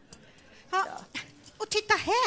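A woman's short, high-pitched squeals and yelps, several in quick succession in the second half, ending in a rising-and-falling cry.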